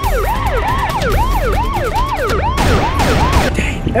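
Police siren in a fast yelp, its pitch sweeping up and down about three times a second over a low rumble. There is a brief rush of noise about two-thirds of the way through, and the siren stops shortly before the end.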